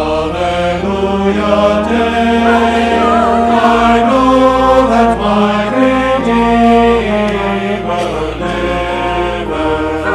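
A church choir sings a sustained choral anthem over pipe organ accompaniment, with held low organ pedal notes that shift about three and a half seconds in.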